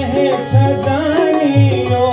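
A man singing a wavering, ornamented melody into a microphone, with deep tabla drum strokes beneath.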